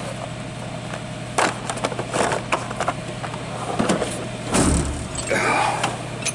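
Plastic tool cases clicking and knocking as they are handled in a steel tool chest drawer, then a heavy thud a little before five seconds in as the drawer shuts, followed by the rumble of the next drawer being pulled open on its slides.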